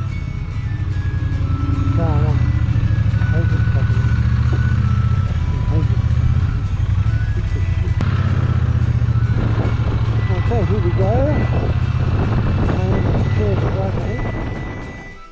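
Triumph Bonneville T120's parallel-twin engine running steadily as the motorcycle rides along, heard from on the bike as a continuous low rumble.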